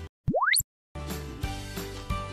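A cartoon-style 'pop-up' sound effect: one quick upward pitch glide, like a slide whistle, lasting about a third of a second. It sits in a short break in the background music, which drops out just before it and comes back about a second in.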